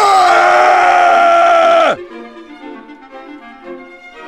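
A loud, long held scream that drops in pitch and cuts off about two seconds in, followed by quieter background music.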